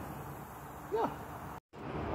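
A man's voice saying a single short word over faint steady background noise, with a brief total dropout near the end at an edit.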